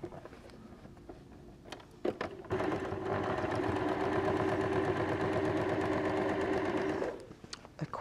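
Electric domestic sewing machine running a quick straight stitch. After a few light clicks, the motor and needle start about two and a half seconds in, run at a fast, even stitch rate, and stop about a second before the end.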